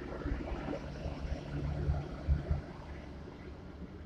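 Low, steady hum of a coach's Thermo King air-conditioning unit running in the cabin, with a few soft low thumps.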